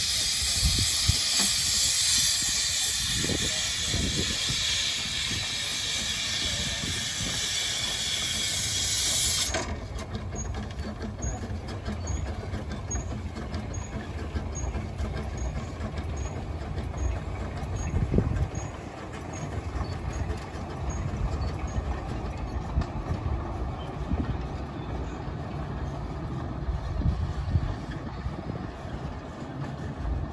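Small narrow-gauge steam locomotives giving off a loud steady hiss of escaping steam, which cuts off suddenly about nine seconds in. After that the double-headed train rumbles past with its wagons.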